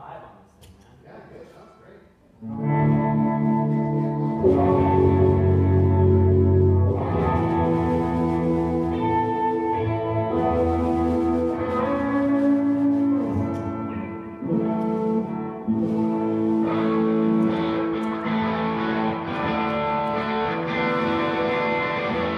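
Electric guitars through effects, with echo and some distortion, begin playing sustained, ringing chords about two and a half seconds in, over a deep low note.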